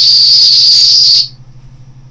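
Small test loudspeaker on a breadboard Arduino gateway circuit giving out a loud, steady, high-pitched whine with hiss, described as a bit loud, once transmission has switched on. It cuts off suddenly just over a second in, leaving a faint low hum.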